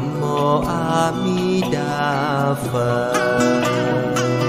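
Buddhist devotional chant sung melodically by a voice over instrumental music, with steady sustained notes underneath.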